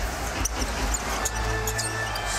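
Arena crowd noise during live play, with music playing and short high squeaks like sneakers on the hardwood court.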